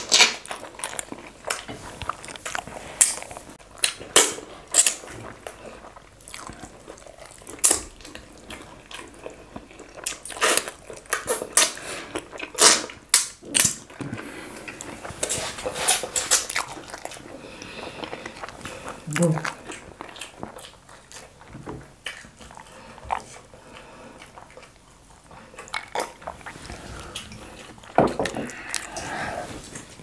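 Close-up eating sounds of fufu and okro soup eaten by hand: wet mouth smacks and slurps, with many short, sharp clicks at irregular intervals.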